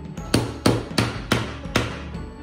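Metal hammer striking a wooden axle peg into a wheel five times, about three blows a second, each a sharp knock, over background music.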